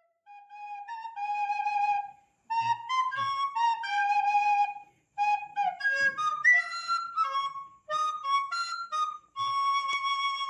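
Solo flute playing a slow melody in short phrases with brief pauses between them, ending on a long held note.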